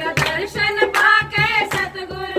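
A group of women singing a Hindi devotional bhajan together, with steady rhythmic hand-clapping and a dholak drum keeping the beat.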